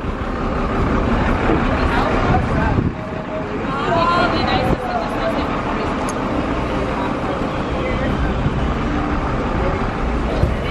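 Steady outdoor street noise with a constant low rumble, and indistinct voices of people nearby, a little clearer about four seconds in.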